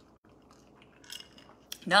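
A quiet sip from a glass, with a faint mouth sound about a second in and a small sharp click near the end, just before a woman starts speaking.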